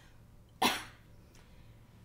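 A single short cough about half a second in, over a faint steady low hum.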